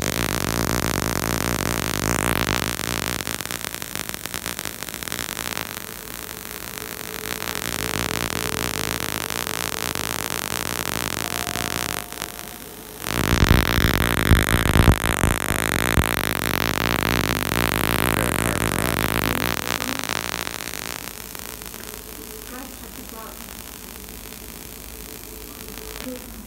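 Tesla coil running, its spark gap firing in a harsh, dense buzz. It gets louder and rougher about halfway through for several seconds, then settles to a quieter hiss near the end.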